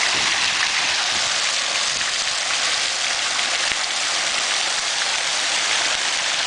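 Water flowing steadily through a shallow stone-lined channel: an even hiss with no let-up, and one faint click about two thirds of the way through.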